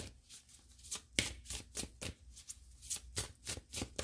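A deck of oracle cards being shuffled by hand: a string of short, sharp card snaps, a few a second, unevenly spaced.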